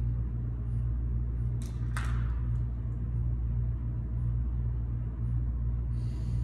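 Steady low hum of a gym's ventilation system, with two short hissing sounds close together about two seconds in.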